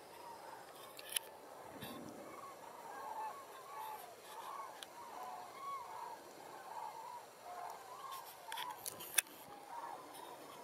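A migrating flock of common cranes calling in flight overhead: a chorus of many short, overlapping trumpeting calls. A sharp click sounds about a second in and a louder one near the end.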